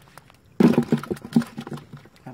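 Catfish thrashing in a net as a hand grabs at them: a sudden, rapid run of slapping and splashing that starts about half a second in and dies away near the end.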